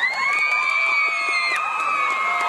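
Crowd of children cheering and screaming. One high scream rises sharply at the start and is held for about a second and a half, over other long held shouts.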